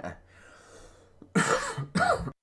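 A man coughing into his hand: a short cough at the start, then two loud coughs close together in the second half.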